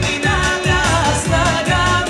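Live amplified Bulgarian pop-folk song: a woman singing over a steady beat, played through a stage PA.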